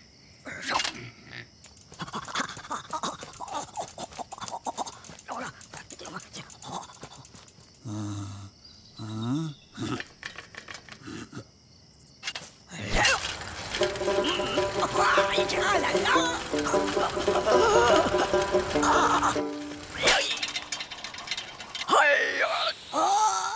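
Cartoon soundtrack: a run of rapid clicks and rattles, with a character's short vocal grunts about eight seconds in, then music with held notes starting about thirteen seconds in.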